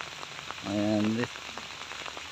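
Steady rain falling on the ground and leaves, with scattered drops ticking. A brief voice-like sound, a short hum or word, comes in the middle.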